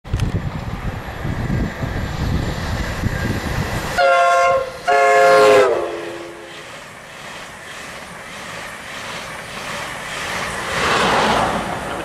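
Two-tone horn of a Class 82 driving van trailer sounded in two short blasts as the train runs through, the pitch dropping as it passes (Doppler). The rushing and rumbling of the Mk3 coaches passing at speed follows, swelling again near the end.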